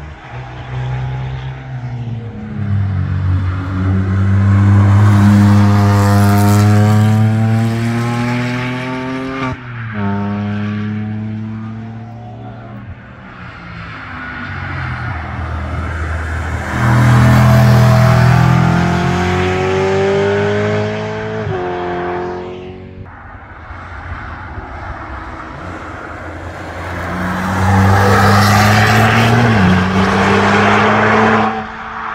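Cars passing one after another at speed, their engines pulling hard: rising engine notes broken by quick upshifts about 9 and 21 seconds in, with the loudest passes around 5 seconds, around 18 seconds and near the end. One of the cars is a BMW M3.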